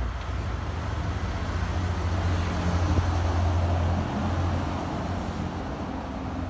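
Low, steady rumble of a running motor vehicle engine with faint steady tones above it, growing louder in the middle and easing off again.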